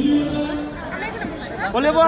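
People talking and chattering, with a voice drawing out a long held sound near the start and again near the end.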